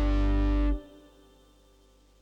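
Background music ending on a held chord with guitar and synthesizer, which cuts off suddenly under a second in.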